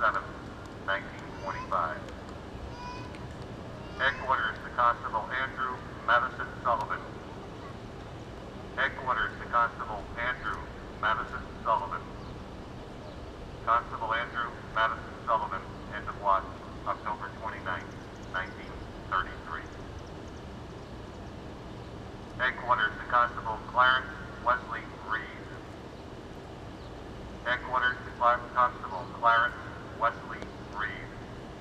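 Police radio dispatcher's voice, thin and narrow like speech through a radio, in short phrases with pauses between them, over a steady low hum. It is the end-of-watch last radio call for fallen officers.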